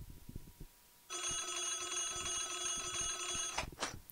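Start of an instrumental backing track: a bright, steady electronic tone with a ringing quality, held for about two and a half seconds from about a second in, then cut off. A few faint clicks come before it.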